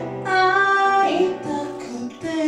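A song performed live: a voice sings over acoustic guitar and piano, holding one long high note in the first second before the melody moves on.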